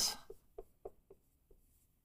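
Dry-erase marker squeaking on a whiteboard as characters are written: four or five short, separate strokes in the first second and a half, then stillness.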